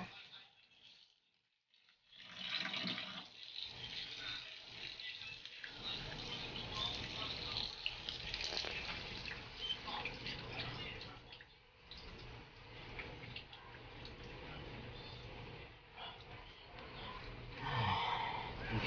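Hands working a croton's soaked root ball in a basin of water, splashing and squelching through wet, muddy soil with many small crackles, starting about two seconds in. The old potting soil is being loosened after soaking because it had set rock-hard.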